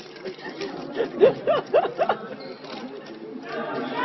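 Chatter of voices, with a few short spoken syllables between about one and two seconds in.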